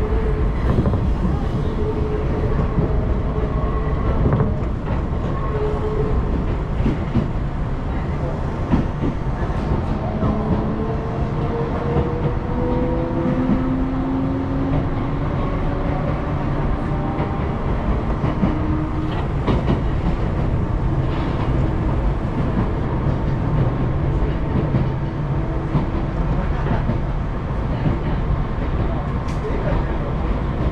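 Hakone Tozan Railway electric train running, heard from inside the carriage: a steady low rumble with occasional clicks from the rails and a faint whine that drifts slightly in pitch.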